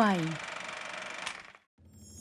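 The last word of an announcer's voice-over, then a steady faint hiss that cuts off abruptly to a moment of silence, followed by a low rumble as a show's intro sting begins near the end.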